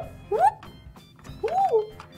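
A plastic toy school bus thunked down upright on a table, followed by two short sliding tones, the second rising then falling.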